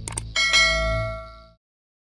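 Two quick mouse-click sound effects followed by a bright bell ding that rings and fades out within about a second. This is the notification-bell sound of a subscribe-button animation.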